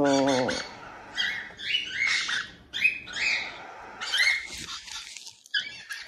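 Cockatiel chicks giving short, high begging calls, about six of them spaced through a few seconds, as they are hand-fed formula by syringe and tube.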